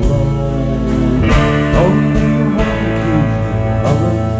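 Live rock band playing a song: electric guitars, bass and drums, with sharp drum and cymbal hits through a steady, full mix.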